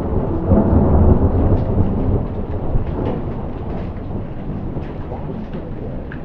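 A roll of thunder rumbling over steady rain, peaking about a second in and then fading. Raindrops tap on a window throughout.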